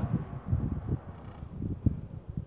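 Wind buffeting the phone's microphone outdoors: an irregular, gusty low rumble that rises and falls in short puffs.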